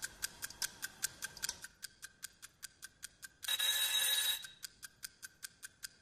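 Mechanical clock ticking briskly, about five ticks a second. Halfway through, an alarm clock goes off with a loud ring for about a second, and the ticking goes on.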